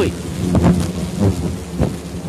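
A swarm of hornets buzzing as a steady low drone around their disturbed nest, with irregular knocks and rustling over it.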